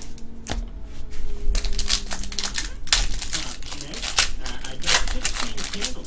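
A foil trading-card pack wrapper being torn open and crinkled by hand, a quick irregular crackle that thickens about a second and a half in.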